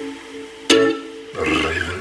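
A single ukulele strum about two-thirds of a second in, its chord ringing and fading. From about a second and a half, a man's voice comes in over it.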